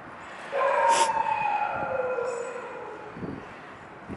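A dog's long, high whine, starting about half a second in and falling slowly in pitch over about two seconds, with a brief knock about a second in.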